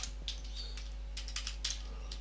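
Computer keyboard being typed on: a handful of irregular, separate keystrokes.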